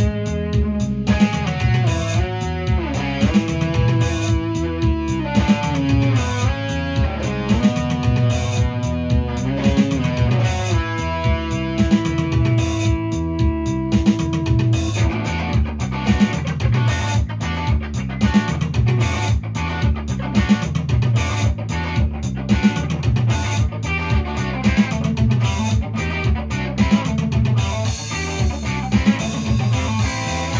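Electric guitar playing an instrumental lead part over a steady beat and bass line. The first half has long held notes with bent, sliding pitches. About halfway through, the playing turns denser and brighter.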